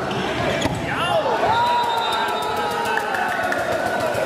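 Volleyball rally in a large echoing sports hall: a ball being struck with sharp smacks about half a second in, over crowd voices calling out. A long held shout follows, with quick rhythmic clicks of clapping in the second half.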